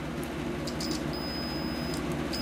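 Multimeter continuity tester beeping as its probes bridge a 3 A fuse on the inverter board. A few brief chirps as the probes make contact settle into a steady high beep about a second in, showing the fuse has continuity and is good. A steady low hum runs underneath.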